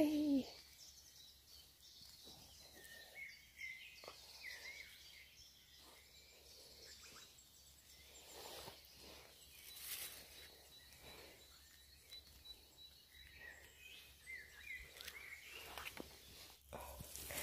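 Faint woodland songbirds chirping here and there, with soft rustling as wood ear mushrooms are picked from mossy branches. A brief low hooting sound right at the start is the loudest thing.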